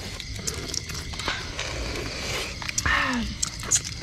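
People eating boiled balut (fertilised duck eggs): soft slurping of the broth from the opened shells, with small clicks and crackles of eggshell being cracked and peeled.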